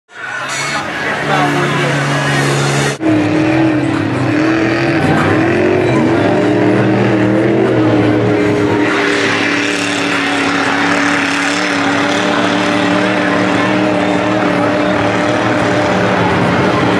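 Chevy mega truck on 84-inch tractor tires running its engine hard in deep mud. The engine note wavers up and down for a few seconds as the throttle is worked, then holds a high, steady pitch. The sound changes abruptly about three seconds in.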